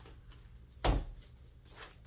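A single knock of a taped stack of bagged and boarded comics against a wooden tabletop a little under a second in, with faint handling sounds around it.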